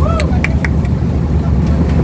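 A boat's motor running steadily, a loud low drone, with short voice sounds in the first second.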